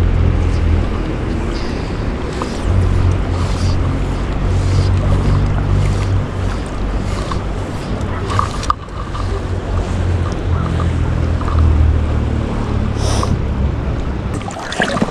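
River water and wind buffeting the microphone of a camera worn by a wading angler: a loud, uneven low rumble that swells and dips, with faint hissy swishes about once a second.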